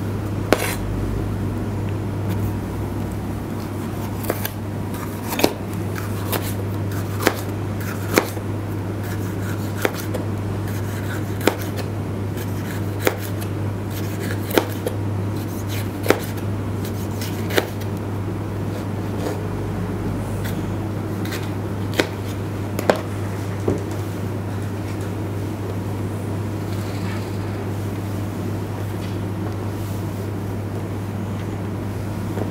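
Kitchen knife slicing a green pepper into rings on a cutting board: about a dozen sharp knocks of the blade on the board, roughly one every second and a half, over a steady low hum.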